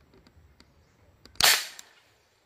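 A homemade marble gun fires once, a single sharp, loud shot about one and a half seconds in, dying away quickly.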